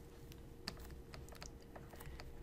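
Faint, irregular little clicks and taps of a stylus writing on a tablet screen, over a faint steady hum.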